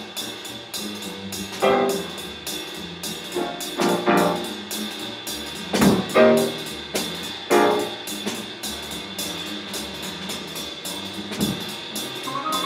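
Live jazz piano trio playing: piano, double bass and drum kit. Loud accented piano chords land about every two seconds over low bass notes and a steady pattern of cymbal strikes.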